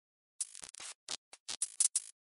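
Glitchy electronic music: short bursts of scratchy static that start and stop abruptly, about eight of them after a half-second of dead silence.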